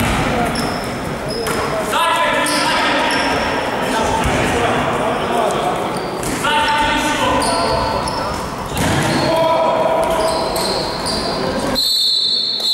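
Basketball game in a gym: the ball bouncing on the court floor, sneakers squeaking and players shouting, all echoing in a large hall.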